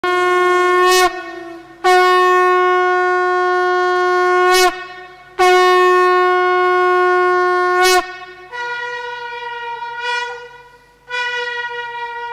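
Traditional Kailaya Vathiyam horns, long brass trumpets and conch, blown in loud sustained single-note blasts. Three long blasts hold one low pitch for the first eight seconds, each sagging slightly as it ends. Shorter, higher-pitched blasts follow, with no drumming heard.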